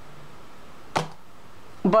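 Quiet room tone with a single sharp click about halfway through, as tarot cards are handled by hand.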